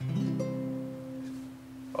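Acoustic guitar with one C major chord, fingered in the G shape up the neck, strummed once and left to ring, fading slowly.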